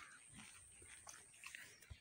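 Near silence, with faint scattered clicks and scuffs.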